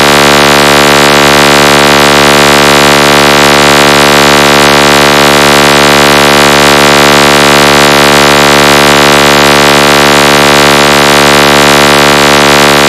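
A loud, steady electronic buzzing tone, rich in overtones and unchanging in pitch, from a DJ speaker-competition track. It begins abruptly right after a spoken DJ tag.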